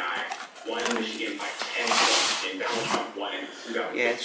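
A cardboard flooring carton being cut open and engineered wood planks pulled out of it, with a scraping, rustling rub about two seconds in. Quiet voices talk underneath.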